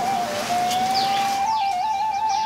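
A flute plays a slow melody that holds one long note with small steps up and down in pitch. Birds chirp with short falling calls over it from about a second in.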